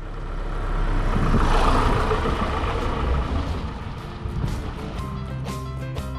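An Auto-Trail F60 motorhome driving past close by. Its engine and tyre noise swells to a peak about two seconds in, then fades. Music with plucked guitar notes comes in near the end.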